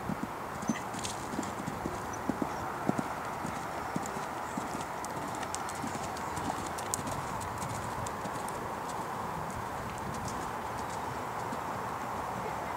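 Hoofbeats of a horse cantering on sand arena footing: dull, irregular thuds, sharpest in the first few seconds, over a steady background hiss.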